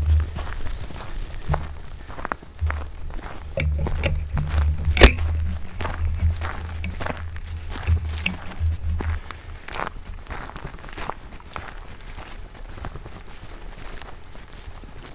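Footsteps on a dirt trail under background music, with a single sharp bang about five seconds in that is the loudest sound.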